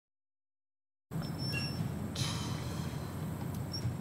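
Silence for about a second, then a steady low rumble of outdoor ambience with a few faint, short high chirps and a brief hiss about two seconds in.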